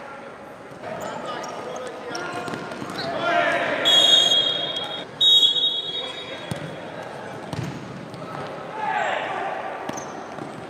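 Referee's whistle blown twice, a long blast then a shorter one, over shouting voices and the knocks of a futsal ball on an indoor court.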